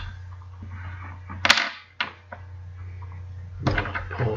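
Steady low electrical hum in the recording, broken by a loud, sharp knock about a second and a half in and a smaller one half a second later.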